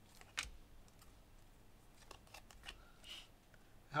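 Soccer trading cards being handled and slid against each other in the hands: faint rustling of card stock with a few sharp little clicks, one about half a second in and several around two seconds.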